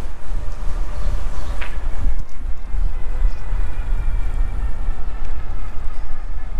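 Wind buffeting the camera microphone on a moving electric bike, a loud steady low rumble, with tyre noise on pavement and a faint steady whine from the e-bike's hub motor.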